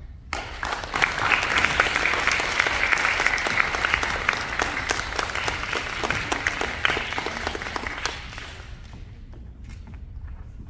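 Audience applauding: the clapping starts abruptly, holds steady for about eight seconds, then dies away.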